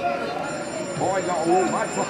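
Indistinct voices talking, with a faint steady high-pitched electronic tone joining in about half a second in.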